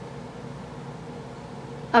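A steady, faint background hum with a few held low tones and no distinct events.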